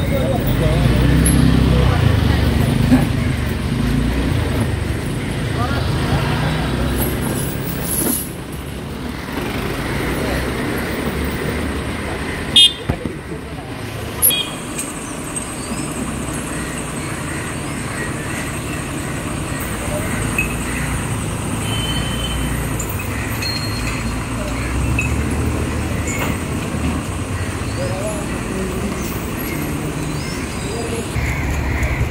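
A diesel lorry's engine idling, with street traffic and people's voices around it. Near the middle come two short sharp clicks, about a second and a half apart.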